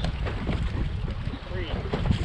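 Wind buffeting the microphone over choppy lake water slapping a boat's hull, with scattered short knocks.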